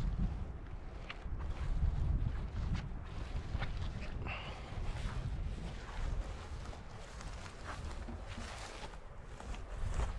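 Wind buffeting the microphone in a steady low rumble, with footsteps and rustling through wet heather and grass tussocks and the swish of a nylon waterproof jacket.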